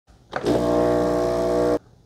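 Ninja Luxe Cafe ES601 espresso machine running with a steady, even-pitched buzzing hum just after its button is pressed. The hum cuts off suddenly after about a second and a half.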